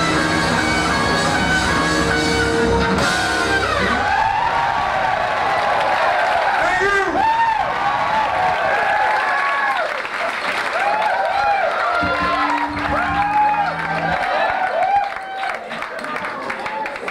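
A live band with electric guitar, bass, keyboards and drums holds a final chord that cuts off about three and a half seconds in. The audience then cheers and whoops, with many overlapping shouts, and a short held low note sounds near the end.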